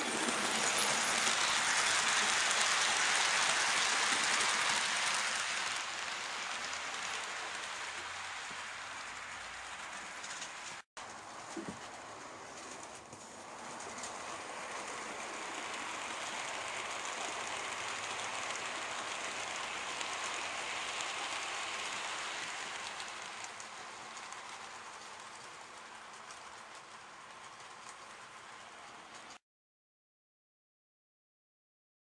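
A 00 gauge model train running past on the track, its running noise swelling and then fading away. After a short break about eleven seconds in, a second pass swells and fades, and the sound cuts off abruptly near the end.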